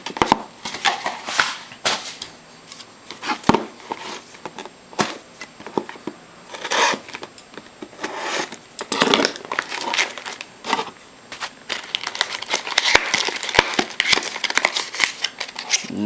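A cardboard trading-card box being handled and opened by hand: irregular crinkling and tearing of wrapping and card stock, with scattered sharp clicks and taps.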